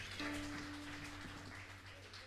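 The close of a live band's song: after the last chord cuts off, a single held note rings on faintly and fades over a soft hiss.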